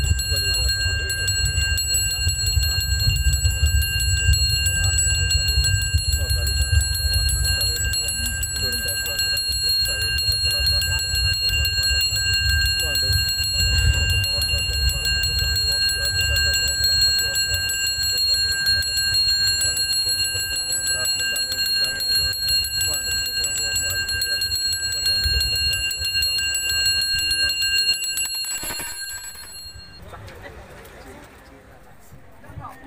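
Balinese priests' brass handbells (genta) rung continuously with a fast, even shimmer of high ringing tones, over a steady low rumble; the ringing stops shortly before the end.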